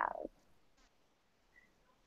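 The last of a spoken word trailing off within the first quarter second, then near silence.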